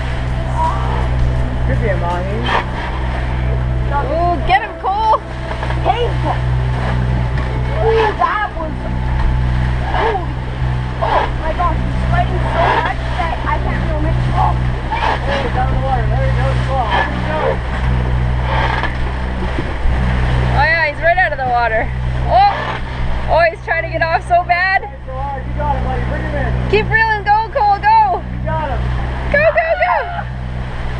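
Sailing catamaran motoring under way: a steady engine hum with water rushing past the hulls. Voices call out over it, more excitedly in the last third as a fish is reeled in.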